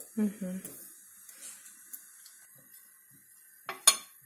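Bread cubes dropped by hand into a dry frying pan with a few faint soft taps, then a metal spoon knocking and scraping against the pan in a quick cluster of sharp clinks near the end, as the cubes are stirred to toast without oil.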